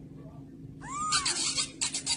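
Young kitten mewing: a short high mew that rises and falls about a second in, wrapped in breathy, scratchy noise, with another short breathy burst near the end.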